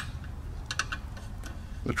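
A few light metallic clicks from a steel bolt being worked through the oil-impregnated bronze bushing and washer of a chair's swivel tilt mechanism: one sharp click at the start, then a small cluster of fainter ticks near the middle.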